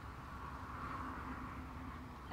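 Faint steady background noise with a low hum and no distinct events.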